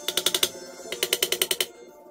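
Quick back-and-forth filing strokes on the ends of newly installed guitar frets along the fretboard edge, in two bursts, about six strokes and then about eight, each burst under a second. Background music plays underneath.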